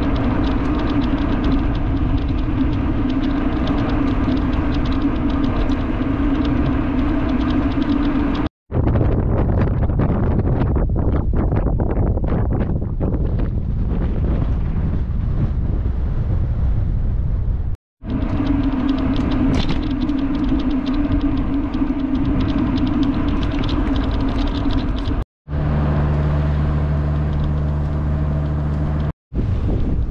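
Steady engine hum of a following motor vehicle mixed with wind rushing on the microphone, heard in short clips separated by brief cuts to silence. The middle stretch is mostly wind buffeting, and near the end a deeper steady engine hum takes over.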